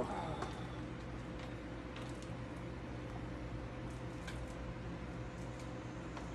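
Quiet room tone: a steady low hum and a faint steady higher tone, with a few faint clicks and taps as a model locomotive is handled.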